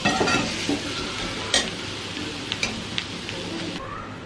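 Onions frying in masala in a steel kadai, sizzling steadily, while a steel spatula stirs them with a few sharp scrapes and clicks against the pan. Near the end the sizzle drops away as the pan is covered with a tawa.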